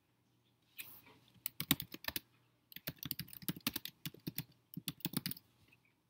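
Typing on a computer keyboard: quick runs of key clicks in a few bursts, starting about a second in and stopping shortly before the end.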